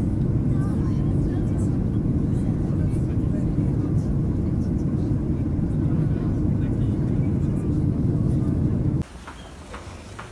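Steady low rumble heard inside a moving vehicle, even throughout and cutting off abruptly about nine seconds in.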